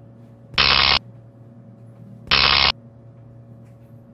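Intro sound effect of electrical hum with two loud, short electric buzzes about two seconds apart.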